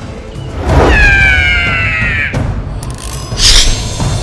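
Dramatic film score under fight sound effects: a swelling whoosh, then a long high tone that falls slightly for over a second, then a short sharp swish near the end.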